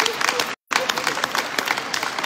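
Audience applauding: many hands clapping in a dense, steady patter. The sound cuts out completely for a moment about half a second in.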